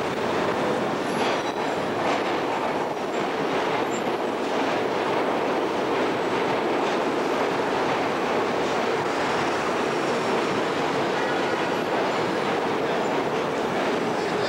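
Loud, steady city din: a continuous rumble with scattered rattling clicks, close to the sound of a train running on rails.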